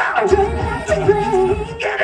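A woman singing into a microphone over an R&B/pop backing track with a bass beat, heard through a concert sound system.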